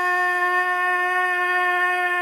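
A man's voice holding one long, steady note, unaccompanied, in a canto de vaquería, the cattle-herding work song of the Colombian and Venezuelan llanos.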